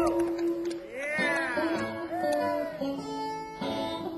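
Live blues band playing, led by a guitar whose notes bend up and fall back in arching phrases over a held steady note.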